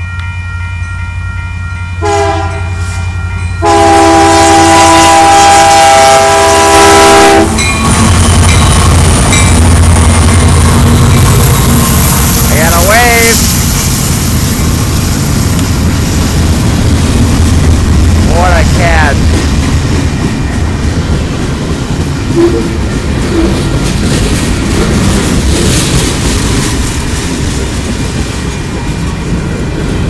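Union Pacific freight locomotive sounding its multi-chime air horn at a grade crossing: a short blast about two seconds in, then a long, loud blast of about four seconds, over the steady ring of the crossing bell. The locomotives then pass with a heavy diesel rumble, followed by freight cars rolling by with steady wheel clatter and two brief wheel squeals.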